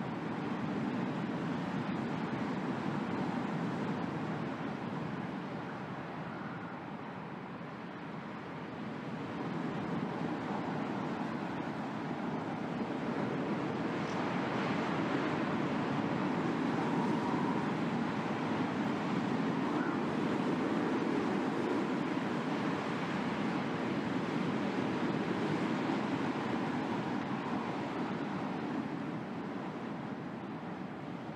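Ambient, noise-like soundscape accompanying a contemporary dance, a steady rushing wash with faint held tones. It dips a few seconds in, then slowly swells louder and eases off near the end.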